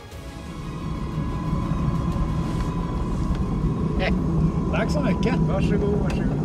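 Cockpit noise of the Pipistrel Velis Electro electric aeroplane with its motor running: a steady low rumble from the propeller and airflow with a thin, steady high whine, fading in during the first second. Short bursts of voices come near the end.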